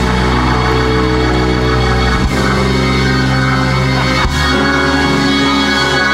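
Keyboard playing sustained organ-style chords, the chord changing about two seconds in and again about four seconds in.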